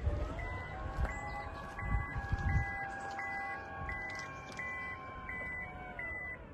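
Toyota Noah/Voxy 90-series power back door opening: the motor's whine glides up as it starts and then runs steady. Over it the door's warning buzzer beeps evenly, about three beeps every two seconds.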